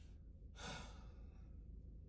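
A man's breathy sigh, one exhale about half a second long, starting about half a second in, over a faint low background hum.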